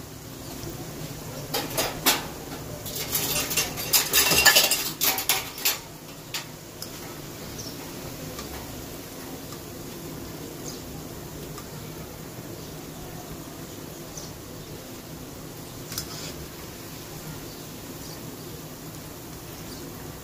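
A wire-mesh skimmer scraping and clinking against a non-stick wok as fried okra is scooped out of hot oil, busiest in the first six seconds. After that the oil keeps frying at a lower, steady level.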